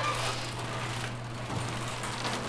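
A garage door opener running: a steady low motor hum under a rumbling hiss.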